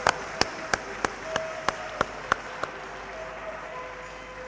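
People clapping: sharp separate hand claps over a light bed of applause, thinning out and stopping a little under three seconds in.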